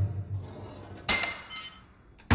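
A low boom fading out, then about a second in a sharp impact with a bright, ringing clink that dies away quickly: a sound effect in a television advert.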